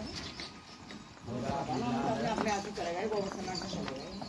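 Indistinct voices of people talking in the background, starting about a second in, with a few faint knocks and scuffs before them.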